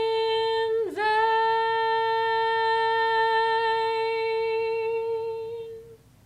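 A woman's unaccompanied voice sings one long high note, with a brief dip and return about a second in. The note is held with a slight waver for about five seconds and fades out near the end, closing the song.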